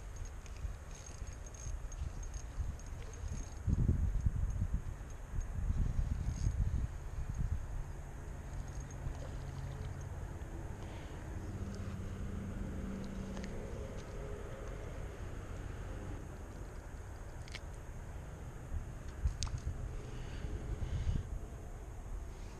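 Wind rumbling on the microphone in gusts, strongest about four to seven seconds in and again near the end.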